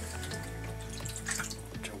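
Water poured from a plastic measuring jug into a tin of tomato sauce, over steady background music.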